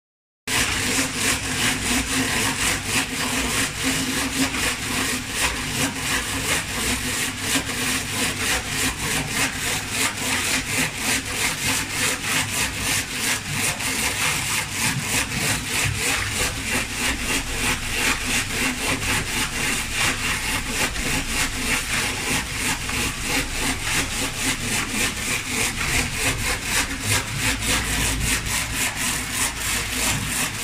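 Rotary die cutting machine running while it die-cuts double-sided tape. It makes a fast, even, repetitive clatter that holds steady throughout.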